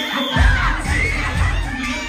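A crowd of children cheering and shouting over loud hip-hop dance music with a heavy bass.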